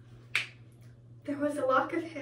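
A single short, sharp snap-like click about a third of a second in, over a faint steady hum.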